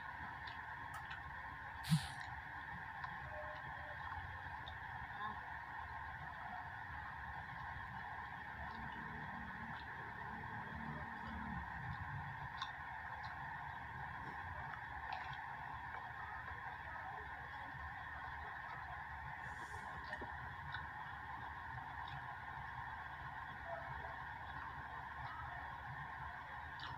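Small clicks and cracks of a seafood shell being pulled apart by hand, with one sharper crack about two seconds in, over a steady droning background noise.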